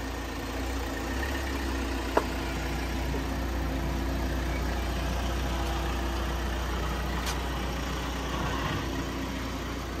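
Toyota Corolla's engine idling with a steady low hum. A single sharp click sounds about two seconds in.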